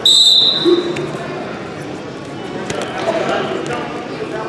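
A referee's whistle blows one short, shrill blast at the start, restarting the wrestlers from neutral. After it come gym crowd voices and a few scattered thuds on the mat.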